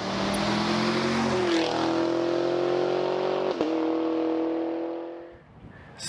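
Car engine sound effect in a logo sting: an engine held at steady revs, stepping up in pitch once about a second and a half in, then fading out near the end.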